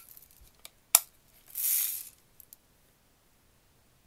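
Daisy Red Ryder BB gun being cocked between shots: a sharp metallic click about a second in, then a short rasping noise and two faint ticks.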